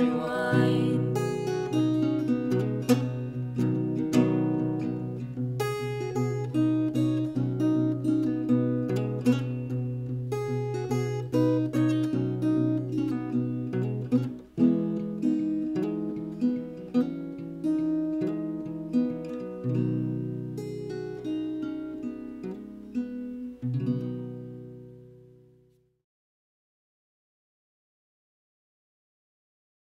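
Acoustic guitar playing alone with no vocals, a run of separately picked notes. Near the end the last notes ring and fade away to silence.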